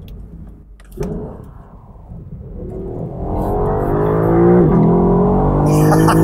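Lexus LC 500's naturally aspirated 5.0-litre V8 accelerating hard, its revs climbing and getting louder, with a brief dip in pitch about two-thirds through as the automatic shifts up. The engine note is partly helped by the car's audio system.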